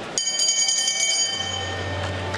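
Boxing ring bell struck once, ringing out with a bright metallic tone that slowly fades.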